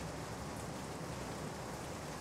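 Steady, even background hiss of room noise in a pause between spoken sentences.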